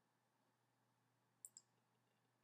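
Near silence, with two faint computer-mouse clicks in quick succession about one and a half seconds in.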